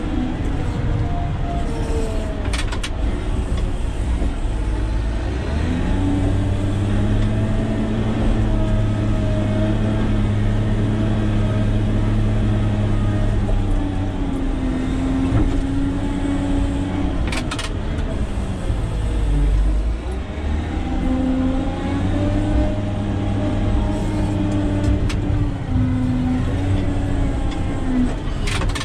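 Caterpillar 120K motor grader's diesel engine running while the machine grades, heard from inside the cab. Its note climbs about six seconds in and holds, sags for a few seconds past the middle, then climbs again, with a couple of brief clicks.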